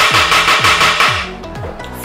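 Wooden gavel banged rapidly and repeatedly on its sound block, a dense run of sharp strikes that fades out after about a second, over background music with a repeating falling bass note.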